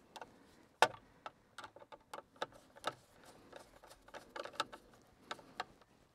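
Faint, irregular small clicks and ticks of wire ends and terminals being handled and connected by hand while a small 12-volt vehicle floodlight is wired in, with one sharper click about a second in.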